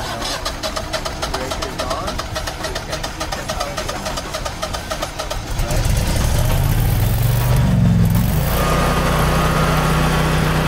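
Generac 26 kW air-cooled standby generator's V-twin engine cranking on its starter with a rapid even rhythm for about five seconds, then catching. It revs up and settles to a steady run near the end.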